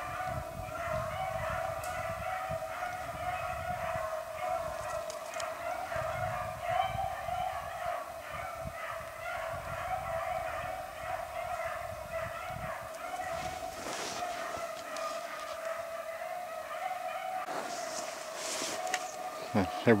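Rabbit hounds baying as they run a freshly jumped rabbit hard. Their voices overlap into one unbroken, wavering chorus.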